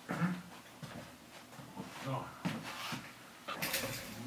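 A man's low, indistinct murmuring, broken up by knocks and rustles of handling, with a short hissing burst near the end.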